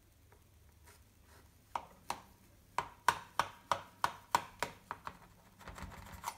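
A kitchen knife chopping down through a baked sponge cake in a metal baking tin. It makes a run of sharp taps, about three a second, that start a couple of seconds in.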